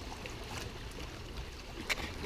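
Yamaha jet ski idling as it moves slowly on the water, a faint steady low rumble, with a small tap near the end.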